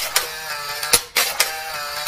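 Sound effect for an animated film countdown: a steady mechanical whir with sharp, uneven clicks, about six in two seconds, like a film projector running.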